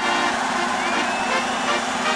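A rushing whoosh sound effect with a held low tone and a faint rising-then-falling glide, opening an animated logo sting.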